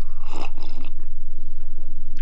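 A man taking a sip from a ceramic mug: one short slurp in the first half-second or so, over a steady low hum.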